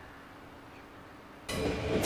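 Faint outdoor background, then about one and a half seconds in, a sudden loud onset of a yellow NS double-decker electric train passing close, its wheels squealing with several high, steady tones over the rail noise.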